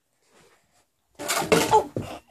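A child's loud, breathy vocal outburst, heard as "Oh!", which starts suddenly after about a second of near silence.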